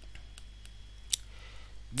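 Faint taps and clicks of a stylus on a drawing tablet while handwriting, with one sharper click about a second in, over a steady low electrical hum.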